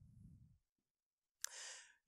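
Near silence, then, about one and a half seconds in, a faint mouth click and a short intake of breath by a man.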